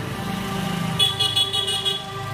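A motor vehicle's engine running, with a steady low pulsing, under background music. About halfway through, a high-pitched tone sounds for about a second.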